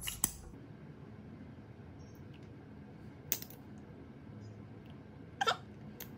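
A few short wet lip smacks as lips press together over freshly applied lip oil, with one sharp smack about three seconds in and another near the end, against a quiet room.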